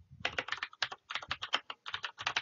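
Fast typing on a computer keyboard: a quick, uneven run of key clicks that starts about a quarter second in.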